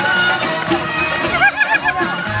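Live oriental belly-dance music with a steady beat; about a second and a half in, someone lets out a high, warbling ululation over it.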